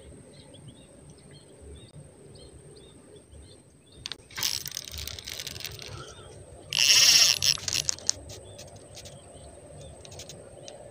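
Handling of a fishing rod and spinning reel close to the microphone: rustling from about four seconds in, a loud scraping burst of under a second at about seven seconds as the rod is lifted, then scattered clicks. Faint bird chirps in the first few seconds.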